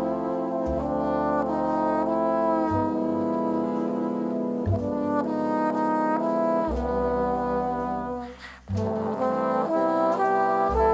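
Jazz big band's trombone section playing a slow ballad melody in sustained chords that change every second or two, with low notes underneath. The sound dips for a moment about eight seconds in, then the chords resume.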